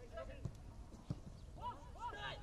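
Players calling out to each other on a football pitch in short shouts, with a couple of dull thuds of the ball being kicked, one about halfway through and another a little later.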